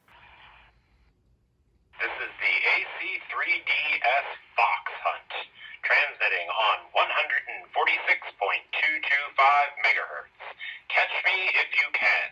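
A recorded man's voice message identifying the fox transmitter, played back over a Baofeng handheld radio's speaker. It sounds thin and narrow, like a radio speaker, and is preceded by a brief hiss as the transmission opens.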